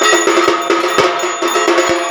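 Metallic bells ringing steadily over a regular percussion beat of about two strikes a second, the bell-and-drum accompaniment of a puja.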